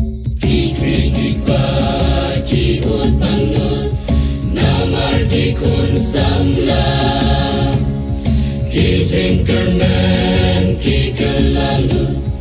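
A choir singing with instrumental accompaniment, the full ensemble coming in about half a second in after a few separate struck notes.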